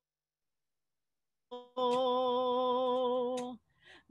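A man singing a Spanish hymn holds one long, steady note, perhaps hummed. It starts about a second and a half in, after dead silence, and cuts off shortly before the end, followed by a faint breath-like sound.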